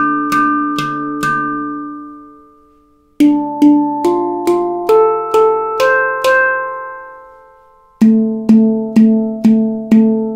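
Victor Levinson handpan in D (D–A–Bb–C–D–E–F–G–A–C) struck one note at a time, about two or three strokes a second, each note ringing on. First the central ding note is struck four times and left to ring, then eight strokes climb up the scale, and near the end a lower note is struck repeatedly.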